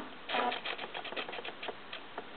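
A stepper-motor-driven carriage and the hobby servo on it ticking in short, irregular clicks as they move in jerky steps to follow the marker. The maker puts the jerkiness down to play in the motors and the untimely asynchronous serial link.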